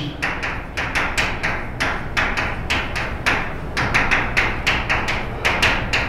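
Chalk writing on a blackboard: an irregular quick run of sharp taps and short scratches as each letter is struck and drawn.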